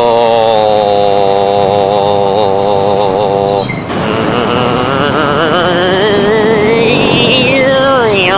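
A man's voice holding long sung or hummed notes with a wobbling vibrato, one note for about three and a half seconds and then another that rises and falls near the end, over the steady engine and wind noise of a motorcycle ride.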